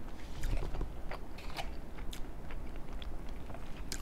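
Close-miked chewing of a soft chicken and cheese enchilada: wet mouth sounds and many short, irregular clicks, with light taps of cutlery on the plate.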